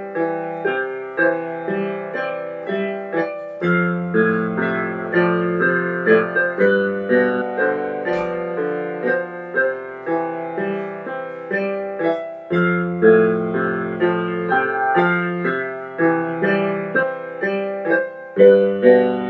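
Electronic keyboard played with both hands in a piano-like voice: a melody of even notes, about two a second, over held chords. A low bass line comes in about four seconds in and drops out briefly near the twelve-second mark.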